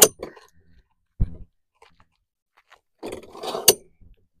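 Folding metal mesh camp table being set up, its legs worked by hand: a sharp metallic click, a dull thump about a second in, a few faint ticks, then a clatter ending in another sharp click near the end.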